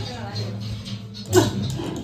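Ride preshow soundtrack in a pause in the dialogue: a steady low music bed with faint scattered effects, and one short, loud sound effect about one and a half seconds in.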